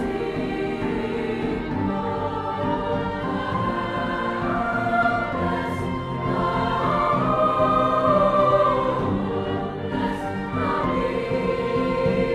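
Youth choir singing slow, held chords in several parts, with piano and string accompaniment, swelling to its loudest a little past halfway.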